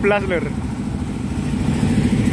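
Low, steady rumble of idling engines, with a man's voice briefly at the start.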